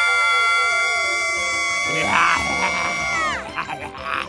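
A young girl's long, high-pitched scream held at one steady pitch, falling off sharply about three seconds in, over background music.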